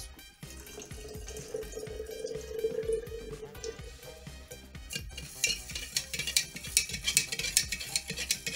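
Water poured from a plastic measuring cup into a glass jar of urea, a steady pouring sound for about four seconds. From about five seconds in, a metal spoon stirs in the glass jar, scraping and clinking against it several times a second.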